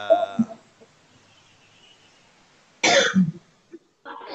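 A man coughs once into a nearby microphone, about three seconds in, a short harsh burst after a quiet pause.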